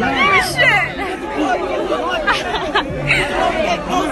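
A dense crowd of people talking and calling out over one another, many voices at once.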